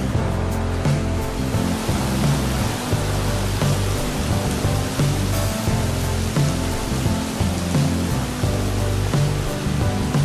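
Background music with a bass line and steady pitched notes, laid over the footage.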